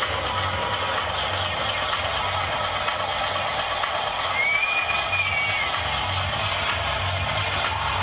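Techno played loud over a club sound system, a steady kick drum thumping under a dense wash of sound, with a brief arching, whistle-like tone about halfway through.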